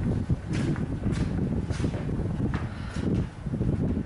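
Footsteps and shuffling on a stage floor, about five short knocks at uneven intervals over a steady low rumble of room and microphone noise.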